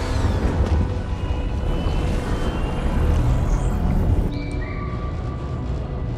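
Film soundtrack: a deep, steady low rumble under sparse music, with a few thin, high electronic tones. About four seconds in, the upper range drops away and the tones step down in pitch.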